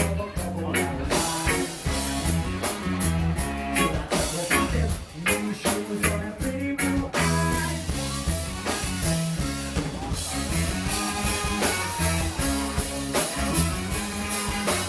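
Live reggae-ska band playing with a steady drum beat, electric guitar, bass and saxophone.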